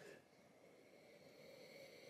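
Near silence: room tone with faint sniffing as two people nose beer in glasses, slightly more audible in the second half.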